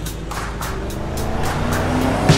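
Cartoon car engine sound effect, a steady low rumble, over background music with a steady beat.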